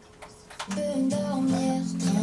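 A song starting on the radio: after a brief near-quiet gap, held musical notes come in about half a second in and carry on steadily.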